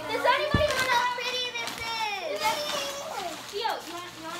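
Children's excited, high-pitched voices, squealing and exclaiming without clear words, with a short low thump about half a second in.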